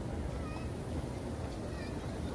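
Open-air crowd ambience: a steady low rumble with faint distant voices and a few short, faint high-pitched calls.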